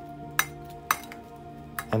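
Metal kitchen tongs clinking in a glass mixing bowl as cauliflower florets are tossed: three sharp clinks, the last near the end, with soft background music underneath.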